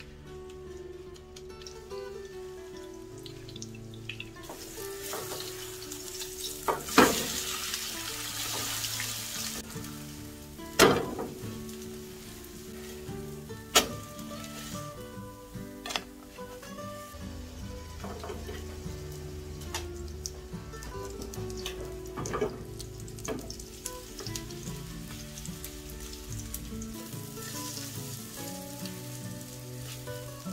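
Spring cabbage pancake batter sizzling in hot oil in a frying pan, loudest from about five to ten seconds in. A handful of sharp knocks of a utensil against the pan, the loudest at about seven and eleven seconds in. Quiet background music runs underneath.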